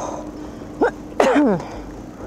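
A person sneezing once, a little over a second in: a short rising intake, then a loud burst that falls in pitch.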